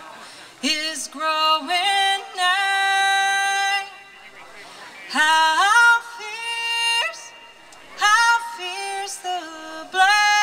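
A woman singing unaccompanied, in long held notes that slide from pitch to pitch. The notes come in three phrases with short gaps between them.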